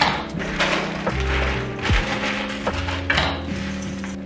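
Plastic salad bag crinkling in a few short bursts as bagged salad is shaken out into a stainless steel mixing bowl, over background music with a steady, stepping bass line.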